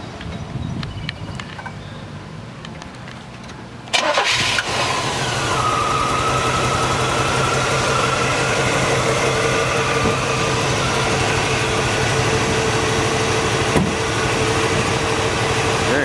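A carbureted GM 4.3 L V6 with headers and dual exhaust starts about four seconds in, with a sudden loud burst. It then settles into a steady, lumpy idle from its mild cam.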